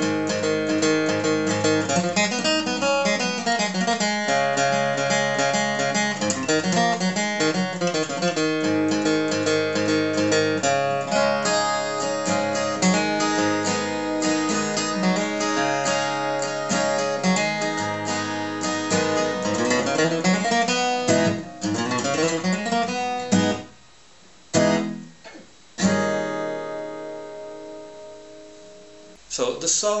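Acoustic guitar capoed at the fourth fret, played with a pick in a fast, continuous run of scale phrases. Near the end the run breaks off into a few separate chords, the last left ringing and fading away.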